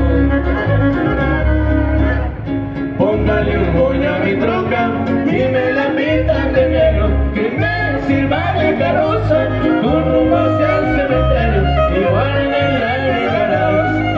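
Live regional Mexican band playing an instrumental passage: a violin leads with gliding bowed lines over strummed guitars and a pulsing bass.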